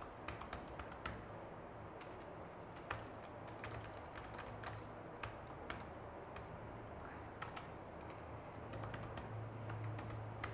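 Typing on a laptop keyboard: irregular, uneven key clicks, some taps louder than others, while details are entered.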